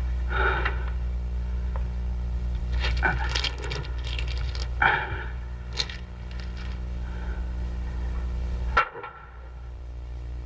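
Steady low hum of an old film soundtrack, with a few short clicks and scrapes scattered through it. Near the end the hum cuts off suddenly with a sharp click.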